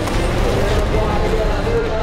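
Several rallycross race cars running hard just after the race start, a dense steady engine and tyre noise.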